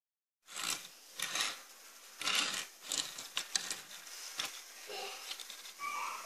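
Handling noise from a small diecast model car being picked up off a wooden desk: six or seven short rubbing and scraping sounds at irregular intervals, starting about half a second in.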